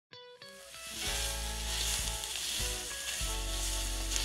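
Food sizzling in a frying pan: a steady hiss that grows louder about a second in. Under it, background music plays held notes over a low bass.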